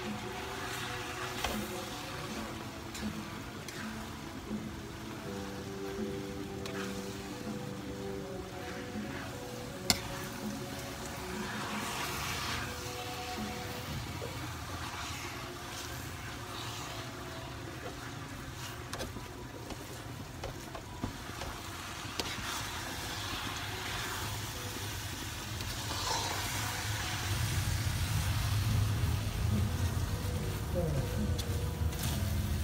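A metal spatula stirs and scrapes thick glutinous rice for biko around a wide aluminium pan, with a few sharp taps of the spatula against the pan. Music plays in the background, and a low rumble builds near the end.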